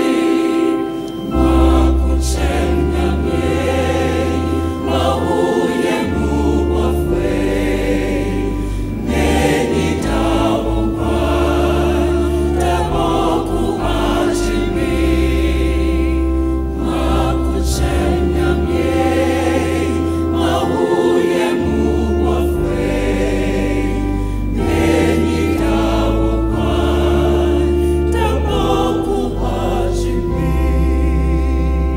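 Gospel music sung by a choir, with held chords over a bass line that changes every couple of seconds.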